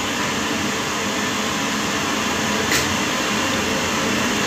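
Steady rushing noise like air moving through a running household machine, unchanging in level, with one short click about three seconds in.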